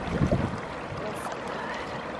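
Small waves lapping and washing against a lake shore in a steady rush of water, with a brief low thump just after the start.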